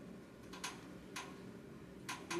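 Two short, sharp small clicks about half a second apart, over a steady low room hum.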